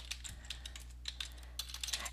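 Typing on a computer keyboard: a quick run of light, faint keystrokes.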